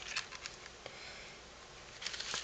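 Handmade cardstock photo mat being handled and turned over, with light rustling and a few small clicks and taps, mostly in the first half second.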